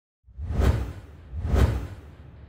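Two whoosh sound effects with a deep low boom under each, one about half a second in and the second about a second later, then fading out: the sting of an animated channel logo intro.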